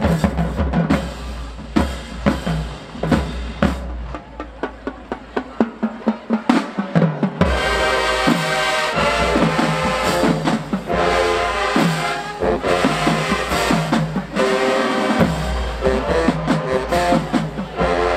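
Marching band playing a dance tune: snare and bass drums drive a fast beat throughout. The low end thins out about four seconds in, leaving mostly drums, and the horns come back in with sustained chords about halfway through.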